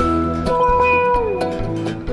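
A dobro played with a slide bar, holding singing notes that glide down in pitch about halfway through, over a bluegrass band's bass and a steady chop.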